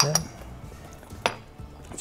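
Kitchenware clinking: a salt cellar knocks against a glass dish twice, once at the start and again about a second later.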